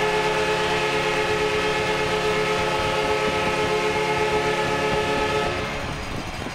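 Arena goal horn sounding after a home goal: one long, steady blast like a train horn, with several tones held together. It cuts off about five and a half seconds in, over crowd noise.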